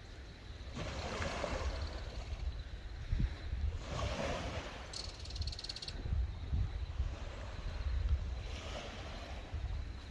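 Wind buffeting the microphone outdoors: a low rumble that swells in gusts, with a brief high rattle about five seconds in.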